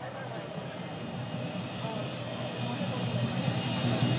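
Stadium crowd murmur and open-air noise, with no band playing, slowly growing louder.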